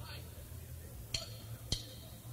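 Two sharp clicks about half a second apart, starting about a second in: a drummer's count-in for a rock band, over a steady low amplifier hum.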